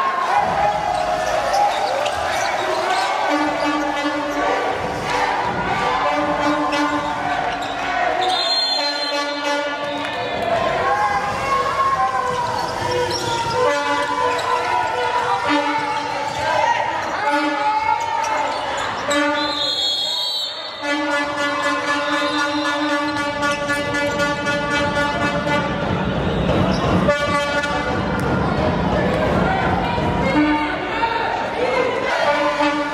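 Handball bouncing on a hardwood court during play in a sports hall, over spectators' voices and long steady horn-like tones.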